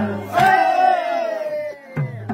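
A voice holding one long, loud call that slides slowly down in pitch, over a group of voices, in a short break in the drumming of a Nepali folk song.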